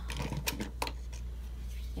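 A few sharp clicks and taps as a rotary cutter is picked up and handled over a cutting mat, all within the first second, over a steady low hum.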